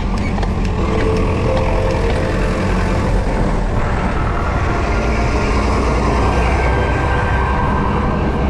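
Heavy trucks running close alongside, their engine and tyre noise mixed with a steady rumble of wind on the microphone.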